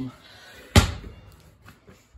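A small toy basketball hits hard with one loud thud about three-quarters of a second in, followed by a few faint knocks.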